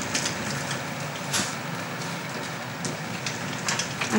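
Steady hiss of indoor background noise with a few faint clicks and rustles scattered through it: the room tone of an internet café's booth corridor.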